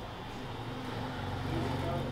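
Low, steady hum of a vehicle engine, growing slightly louder over the two seconds.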